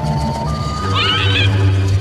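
Cartoon soundtrack sound effects: a steady low hum under a thin whistle that steps up in pitch, and a short quavering animal-like call about a second in.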